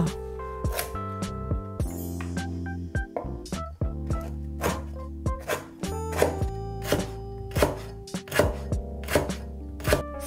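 A steel cleaver chopping lemongrass stalks against a wooden cutting board: a dozen or more sharp, irregular chops, about one or two a second, over background music.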